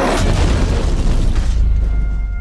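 A deep trailer-style boom hits at the start and rumbles on under music, its noise beginning to fade near the end.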